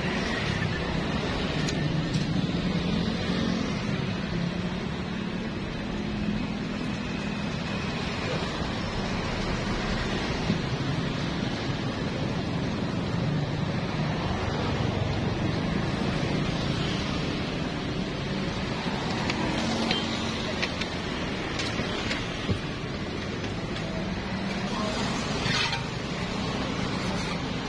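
Steady street background noise, mostly traffic, with faint voices, and a few light clicks of utensils on the griddle.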